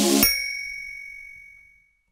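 The last moment of a pop song: the band cuts off about a quarter second in, leaving one high bell-like ding that rings on and fades out to silence.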